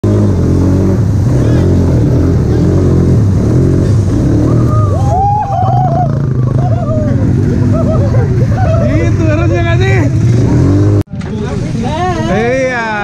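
ATV engines running steadily, with people's voices over them from about halfway through. The sound cuts off abruptly about a second before the end.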